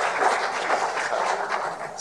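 Audience applauding, an even patter of many hands clapping.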